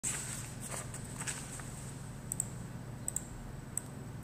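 Computer mouse clicking a few times, paired clicks about two and three seconds in and one more near the end, over a steady low electrical hum and a faint high whine.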